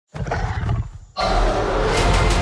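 A film-trailer gorilla growl: a low, rumbling snarl that fades after about a second, then a sudden loud, full sound cuts in just over a second in.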